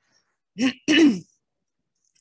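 A woman clearing her throat: two short bursts in quick succession, a little after half a second in.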